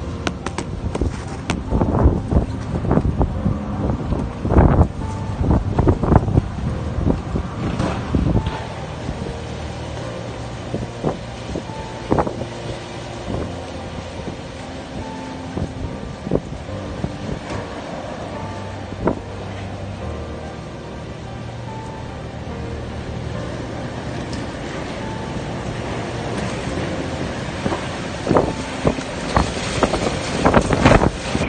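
Storm wind gusting hard against the microphone in rumbling buffets, heaviest through the first several seconds and again near the end, with music playing steadily underneath.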